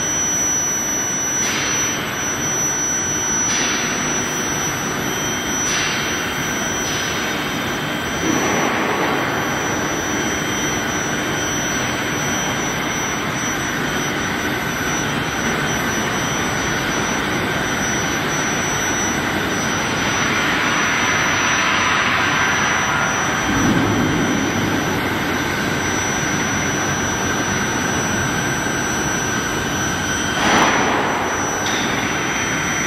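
Steel-bar induction hardening and tempering line running: a steady, loud machinery roar with a thin, high-pitched steady tone held throughout. The roar swells briefly a few times, most of all about two-thirds of the way in.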